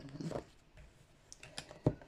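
Fortune-telling cards being laid down on a cloth-covered table: a few light clicks in the second half, the sharpest just before the end. There is a brief low murmur at the start.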